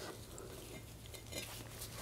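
Quiet shop room tone with a low hum and a few faint clinks, about one and a half seconds in, as a steel brake rotor is handled while a rubber grommet is pushed into it.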